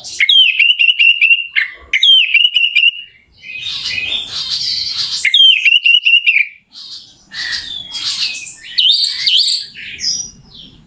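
Orange-headed thrush (anis merah) singing a varied song. Phrases of quick repeated clear notes, about five a second, alternate with denser, scratchy jumbled passages.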